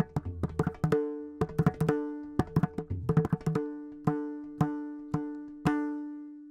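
Mridangam played in a rapid Karnatic rhythmic phrase. The tuned right head rings at a fixed pitch on each stroke, and a few deep bass-head strokes fall just before the start. The strokes then thin out to four evenly spaced ringing strokes, about two a second, and the last is left to ring.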